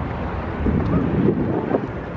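Wind buffeting the microphone outdoors, a steady low rumble with no clear speech.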